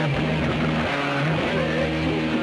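Loud rock music, with distorted electric guitar holding sustained chords that change about halfway through.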